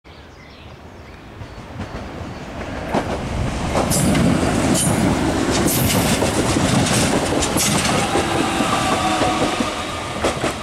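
BLS RABe 525 electric multiple unit passing close by, its wheels clicking sharply over rail joints. The sound builds over the first four seconds and stays loud as the cars go by, with a steady whine appearing near the end.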